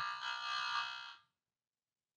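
Trivia game buzzer sounding once: a steady electronic tone with many overtones that fades out about a second in.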